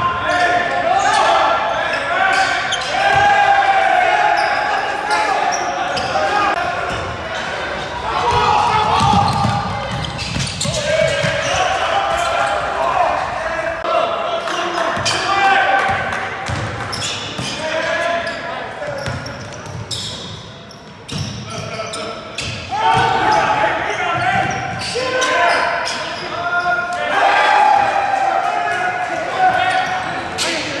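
Live game sound in a gym: a basketball bouncing on the hardwood court amid scattered knocks, while players and coaches call out without clear words, all echoing in the large hall.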